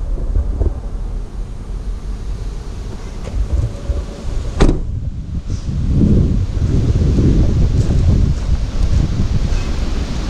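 Wind buffeting the camera's microphone: a rough low rumble that grows stronger about six seconds in. A single sharp knock sounds a little before the middle.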